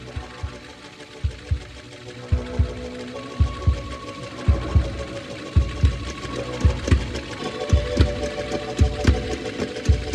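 Electronic music intro: a low pulsing thump, mostly in pairs at about one pair a second, grows louder over a sustained synthesizer drone.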